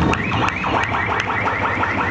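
A rapid, high warbling sound, about seven pulses a second, over steady background music.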